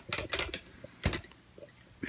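A few light clicks and taps of small objects being handled on a workbench, the sharpest about a second in.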